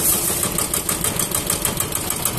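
Kubota ER550 single-cylinder diesel engine on a Kubota ZK6 walk-behind tiller idling, with a fast, even knocking beat.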